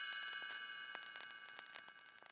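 Read-along book's page-turn chime ringing out and fading away, the signal to turn the page; faint clicks sound under it.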